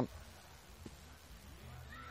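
A short pause in a man's speech: faint outdoor background with a single small click a little under a second in.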